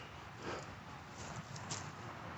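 A few faint footsteps, quiet knocks spread over a couple of seconds.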